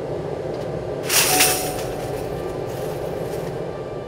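Steady rumble of a fired furnace with open flames, and a brief metallic scrape about a second in as a wire basket of spoons is pushed across the hearth with an iron hook. Soft background music runs underneath.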